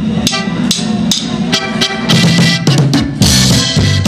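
Live norteño band playing the start of a song: drum kit keeping an even beat about twice a second under electric bass and button accordion, with a cymbal crash about three seconds in.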